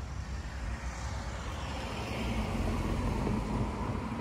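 Steady road and engine noise of a car driving, heard from inside the cabin, swelling a little about two seconds in.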